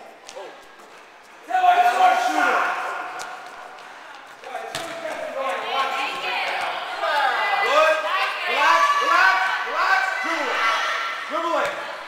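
A basketball bouncing on a gym floor with a few sharp thuds, under overlapping shouts and calls from several voices that start about a second and a half in and go on almost without a break from about halfway.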